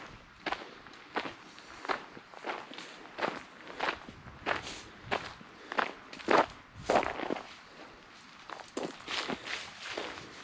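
Footsteps crunching on a gravel trail scattered with dry fallen leaves, at a steady walking pace of about one and a half steps a second, with a brief pause about three-quarters of the way through before the steps resume.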